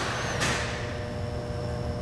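Steady low hum and hiss of background noise inside a pickup's cab, with faint steady tones coming in about half a second in.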